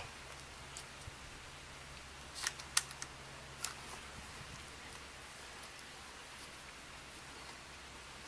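Quiet background: a steady low hum and hiss, with a few faint clicks about two and a half to three and a half seconds in.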